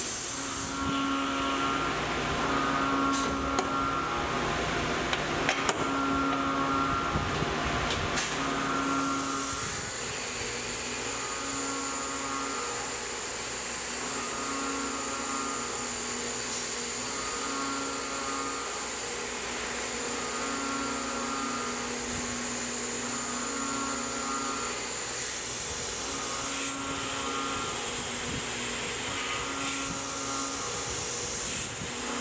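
Tormach CNC mill spindle machining an aluminium plate under a steady hiss of coolant spray. The cutting tone comes and goes in a regular cycle about every two seconds, with a few sharp ticks in the first several seconds.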